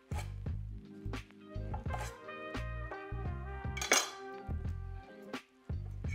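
Background music with a pulsing bass line over a chef's knife cutting a shallot on a wooden cutting board: several sharp knocks of the blade against the wood, the loudest about four seconds in.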